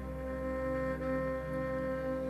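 Kabak kemane, the Turkish bowed gourd fiddle, played with a horsehair bow and holding a long, steady note.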